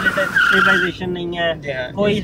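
Suzuki Liana's tyres squealing under hard braking: a loud skid of about a second that cuts off suddenly as the car stops. The car has no ABS.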